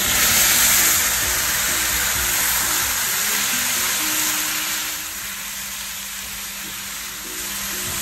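Pineapple chunks tipped into a frying pan of hot oil and softened onions, sizzling. The sizzle is loudest as they go in and eases off gradually over the following seconds.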